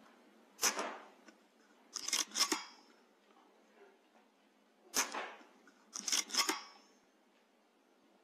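Weihrauch HW100 .22 pre-charged air rifle fired twice, about four and a half seconds apart: each shot is a single sharp crack. About a second and a half after each shot come two or three quick metallic clacks with a short ring, the side lever being worked to load the next pellet.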